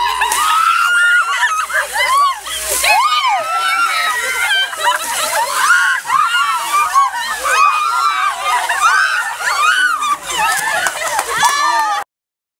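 Buckets of ice water splashing onto a group of people, who shriek and yell in high, sliding voices as the cold water hits them.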